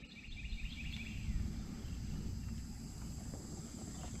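Outdoor ambience by a pond: a steady high insect buzz, with a short run of bird chirps in the first second or so, over a low rumble.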